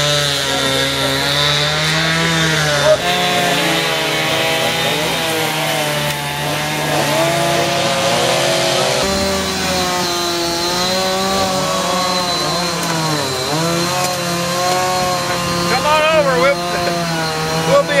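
A petrol chainsaw running continuously at speed, its engine pitch rising and falling as it works.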